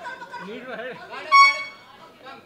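Shouting voices, then a short, loud horn toot about a second and a half in.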